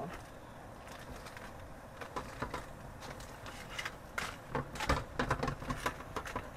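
Aluminium foil crinkling and rustling as it is folded closed with tongs over roasted tomatoes and peppers in a pan, in quick irregular crackles that grow busier about two seconds in.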